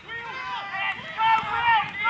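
Voices shouting across the football ground, overlapping short calls from players and spectators during play.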